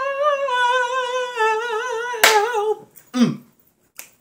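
A singing voice holds one long, high, wordless note, steady at first and then wavering with vibrato. A sharp click cuts in a little past two seconds, and near the end a short vocal sound slides down in pitch.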